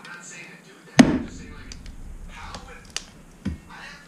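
Split firewood being loaded into a wood stove's firebox: a heavy knock about a second in as a log lands, then two lighter knocks about a half-second apart near the end.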